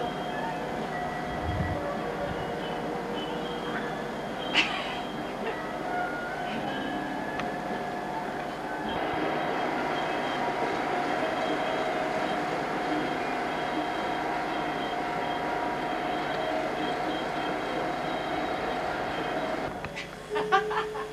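Steady mechanical hum with several held tones, changing slightly about nine seconds in, with one sharp click about four and a half seconds in.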